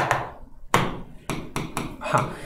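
Marker pen tapping and stroking against a whiteboard while writing: about five sharp, separate taps spread over two seconds.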